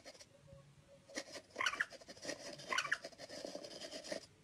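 Tablet cat game playing its mouse squeak, a short squeaky call repeating at a regular interval of a little over a second, with light taps and scratches of kitten paws on the screen.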